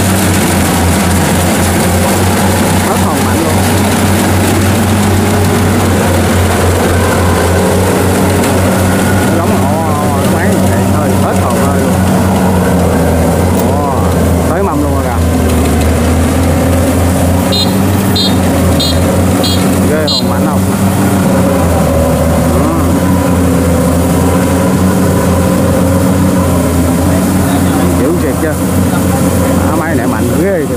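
Kubota DC70 Pro combine harvester running steadily, engine and threshing machinery working at a constant pitch as it harvests rice and crawls through soft, boggy ground on its tracks.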